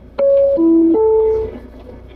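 PostAuto three-note announcement chime, the Swiss post-bus horn call: a high note, a drop to a low note, then a rise to a middle note (C-sharp, E, A), each held about half a second. It signals that an onboard announcement is coming. A steady low hum runs underneath.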